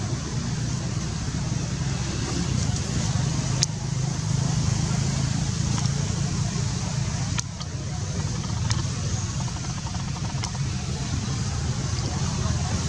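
Steady low outdoor background rumble, with a few sharp clicks about three and a half, seven and a half and nine seconds in.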